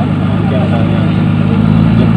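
Fire engine's engine idling steadily, a constant low hum under faint background voices.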